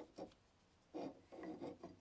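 Faint rubbing and clicking noises in a few short bursts: one about a second in and several more just before the end.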